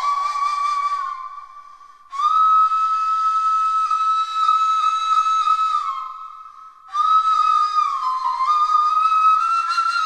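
Background music: a solo flute-like wind instrument playing a slow melody of long held notes, twice fading out and coming back in.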